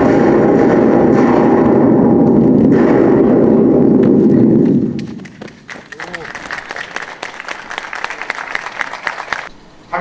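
Tunnel breakthrough blast heard from inside the tunnel: a sudden loud rumble that holds for about five seconds and then dies away. It is followed by applause.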